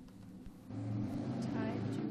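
Voices calling and answering a roll-call vote away from the microphones, louder from about two-thirds of a second in.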